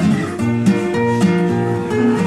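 Solo classical acoustic guitar playing a blues, with plucked notes and chords over a moving bass line.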